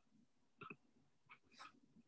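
Near silence, with a few faint, very short sounds about half a second in and again around the middle.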